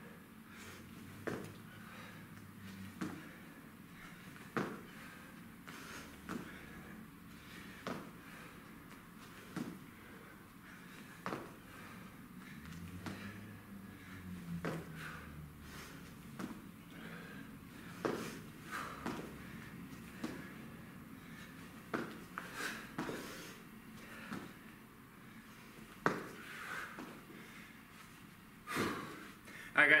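A man breathing hard through a set of push-ups and burpees, with short sharp exhales roughly every second and a half and light thuds of hands and feet landing on a rubber gym floor.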